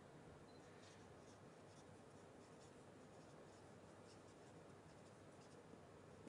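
Near silence: faint room hiss with light, scattered scratches of writing on a board.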